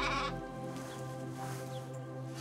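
A sheep bleats once at the start, over background music of sustained notes.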